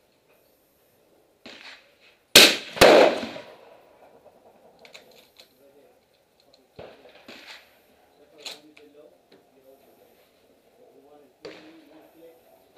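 Savage Model 10 bolt-action rifle with a Gemtech Quicksand suppressor firing: a sharp report about two and a half seconds in, followed less than half a second later by a second sharp report that rings on under the range roof. A few fainter clicks follow.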